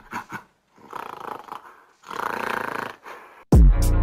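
Intro of an NYC drill track: a few quiet, rough noises, then about three and a half seconds in the beat drops with a loud, deep 808 bass that slides down in pitch.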